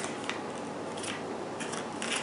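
Small paper-and-foil medicine packets rustling and crinkling as they are handled and laid down, with a few faint light clicks.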